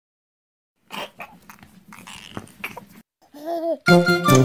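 About a second of silence, then a toddler's babbling with light clicks and knocks from playing with a small toy. Near the end comes a short rising-and-falling whimper from the child, and music starts just as it ends.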